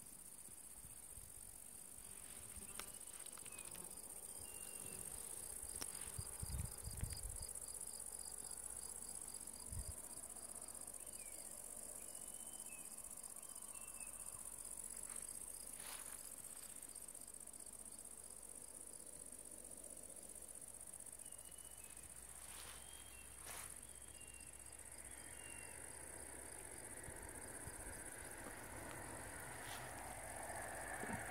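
Meadow insects chirring steadily at a high pitch, with a few short bird chirps. A few low thumps come early on, and a car on the road draws closer near the end.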